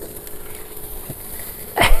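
Beef slices sizzling steadily on a charcoal grill, with a man's short laugh near the end.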